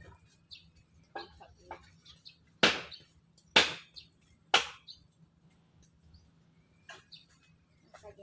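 Three loud, sharp strikes about a second apart near the middle, each fading quickly, with faint scattered bird chirps around them.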